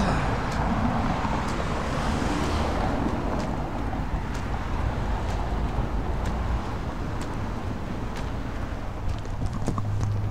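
Footsteps on a sidewalk at a walking pace, about two a second, picked up by a camera microphone with a low rumble of traffic and wind. A passing car adds a brief swell of road noise in the first few seconds.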